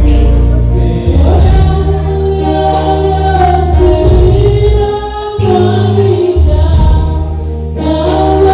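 Gospel worship song sung by a group of voices with electronic keyboard accompaniment: sung harmonies over held bass notes and a steady beat.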